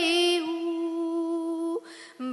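A girl singing unaccompanied into a microphone, holding one long steady note that breaks off near the end.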